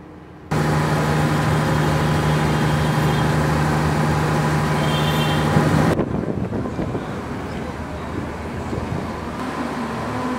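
A steady motor hum with a strong low drone starts abruptly about half a second in. It cuts off about six seconds in, replaced by noisier outdoor traffic-like ambience.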